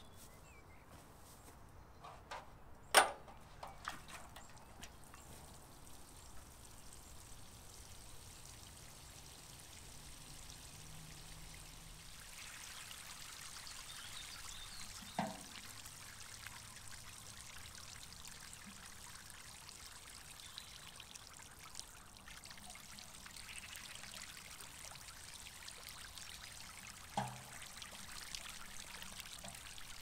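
Water pouring and trickling from two 12-litre metal watering cans into compost-filled potato buckets, a faint steady flow that starts partway through. A single sharp knock, the loudest sound, comes about three seconds in, with two softer knocks later.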